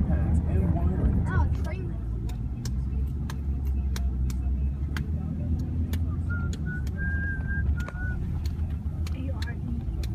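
Car cabin noise while driving: a steady low rumble of road and engine noise heard from inside the car. A few short high tones sound about two-thirds of the way through.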